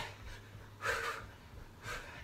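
A man breathing hard from the exertion of fast high knees on the spot: two sharp breaths, the first about a second in and a shorter one near the end.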